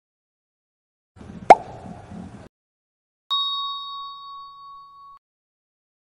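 Sound effects of an animated intro: about a second and a half in, a sharp click with a quick downward sweep in pitch over a brief rustling noise; then, just past three seconds, a bright ding that rings on a steady tone for nearly two seconds and fades.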